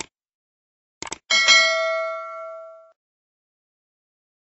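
Subscribe-button sound effect: a mouse click, then two quick clicks about a second in, followed by a bright bell ding that rings and fades away over about a second and a half.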